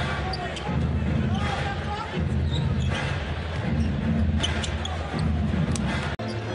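A basketball being dribbled on a hardwood court amid steady arena crowd noise.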